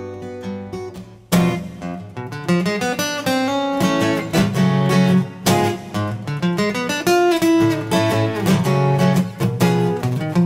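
Solo steel-string acoustic guitar playing a picked passage: notes ring and fade, then a sharp, loud attack a little over a second in starts a brisk run of single notes and chords.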